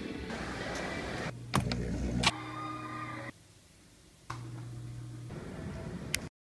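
Everyday background sound from a run of one-second home video clips, cut abruptly about once a second. It moves through room noise and a low steady hum, with two sharp clicks in the first half and a brief near-silent stretch.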